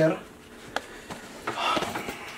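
A metal snake hook knocks once against the inside of a plastic bucket as it works a snake out. Near the end comes a short, soft breathy noise.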